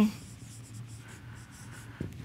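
Marker pen writing on a whiteboard: a faint run of short strokes as a word is written.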